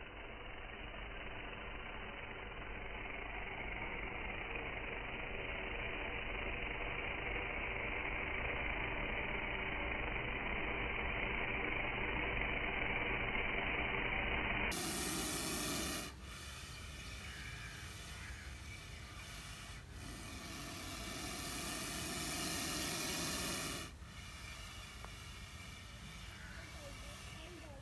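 Cobra hissing: a long, steady hiss that slowly grows louder. About halfway through it is followed by louder, harsher hisses, the last of which swells for a few seconds and breaks off sharply near the end.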